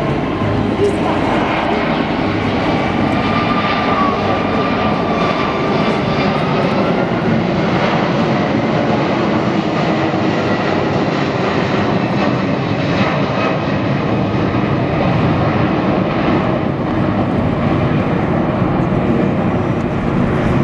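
Airbus A340-600 jet airliner with four Rolls-Royce Trent 500 turbofans climbing away overhead in a banking turn. The engines make a loud, steady jet noise throughout.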